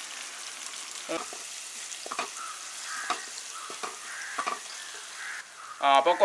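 Sliced onions sizzling in hot oil in a wok, stirred with a wooden spatula that scrapes and knocks against the pan about five times.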